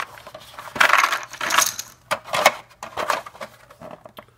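Small game number tokens tipped out of a plastic box insert onto a table, clattering in a dense burst about a second in, followed by several separate clicks as they settle and are spread out.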